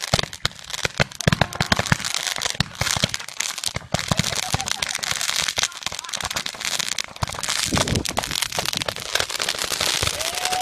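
Handheld fireworks going off: a rapid, irregular string of pops and bangs as they fire, over a crackling hiss of burning sparks that grows denser about halfway through.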